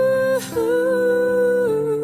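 A female singer holds long, slightly wavering notes on a hummed or open vowel over sustained low chords in a slow ballad. The held note breaks briefly about half a second in and carries on, and the chord underneath changes near the end.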